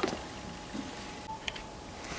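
Quiet room tone with a few faint clicks of handling: one sharp click at the start and two small ones a little after halfway.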